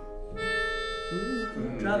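A small red handheld wind instrument blown at the mouth sounds held, reedy notes with several tones at once, a new note starting about a third of a second in and stopping about a second later. A man's voice comes in over it near the end.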